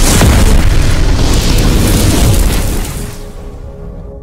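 Explosion sound effect: a sudden loud boom that starts abruptly, holds for about three seconds and then dies away. Steady ringing musical tones come in near the end.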